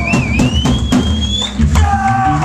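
Live hardcore punk band starting a song: drums hit and distorted guitars and bass come in loud together, with a thin high whine rising in pitch over them for the first second and a half.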